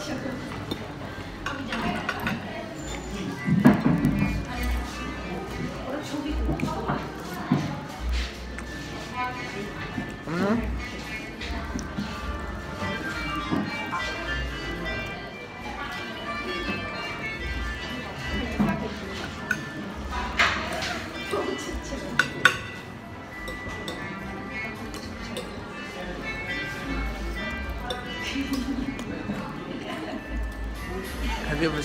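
Background music playing with voices, and metal cutlery clinking against a plate now and then.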